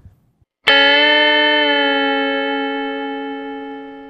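Electric guitar double stop, A on the first string and C♯ on the third, picked once about two-thirds of a second in and left to ring, fading slowly.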